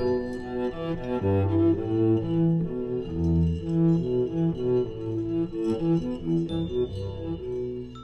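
Cello playing a steady stream of short, repeated notes, accompanied by percussion with occasional ringing metallic strikes, in a contemporary chamber piece for cello and brake drums.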